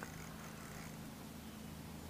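A faint, steady low hum with no clicks or breaks.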